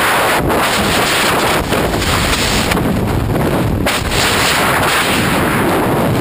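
Free-fall wind rushing and buffeting over a wrist-mounted camera's microphone: a loud, unbroken roar with a few brief dips.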